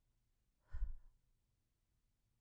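A woman's short sigh close to the microphone: one brief breath out about a second in.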